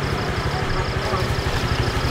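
Small motorbike engine idling close by, a steady rapid even pulse.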